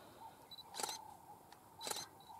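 Single-lens reflex camera shutter clicking, two sharp clicks about a second apart, over faint bush background.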